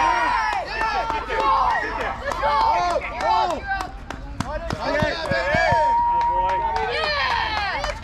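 Many voices shouting and cheering over one another as a batter gets a hit and runs the bases, with one long held yell about six seconds in.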